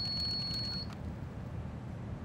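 A single steady, high-pitched electronic beep that cuts off suddenly a little under a second in, leaving a faint low rumble.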